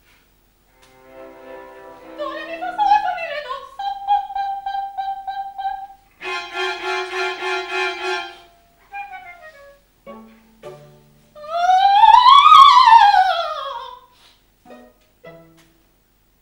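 Contemporary chamber-opera music with bowed strings, played in short separate phrases: a held note, a full chord, then a loud line that climbs and falls back down about twelve seconds in.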